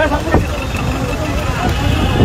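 Busy street noise: a steady traffic rumble with a crowd's raised voices over it, and a brief sharp sound about a third of a second in.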